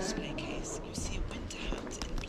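Whispered speech: soft, hissy voices with a few light clicks.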